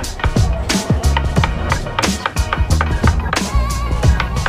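Background music with a beat, over repeated sharp knocks of a wooden mallet striking a carving chisel as it cuts into the wood, several blows a second.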